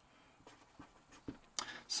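Felt-tip marker writing on paper: a few faint, short strokes as words are written.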